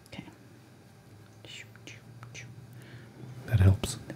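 A person making mouth sound effects for slow motion, imitating the bionic sound from the old TV show: a few soft, whispery hissing strokes over a low hum that starts about a second in, then a louder voiced sound near the end.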